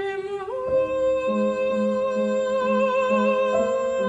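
A soprano voice sings a held note, rises to a higher note about half a second in, and sustains it with vibrato. Piano accompaniment plays a repeated pulsing figure in the bass underneath.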